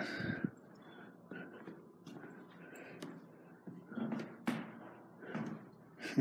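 A series of faint, irregular knocks and thuds, about one a second, with the sharpest about four and a half seconds in.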